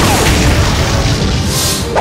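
Dramatic fight-scene music layered with booming impact and energy-blast sound effects, with a swishing effect near the end.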